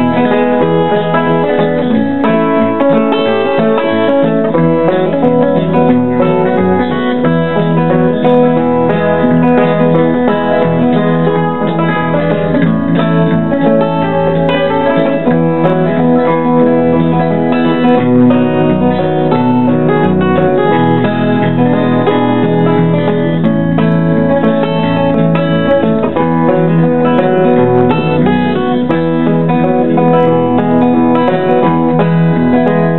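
An instrumental song played on guitar, with plucked notes and chords sounding continuously at a steady level.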